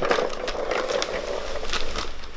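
Wrapping paper being torn and crinkled as a present is unwrapped: a continuous crackling rustle.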